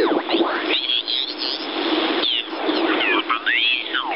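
Amateur radio signals on the 40 m band coming through the OzQRP MDT's direct-conversion receiver as its tuning dial is turned. Voices slide up and down in pitch into garbled whistles over a steady band hiss.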